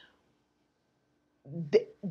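A pause in near silence, then about a second and a half in a woman's voice starts speaking again with a short broken-off syllable.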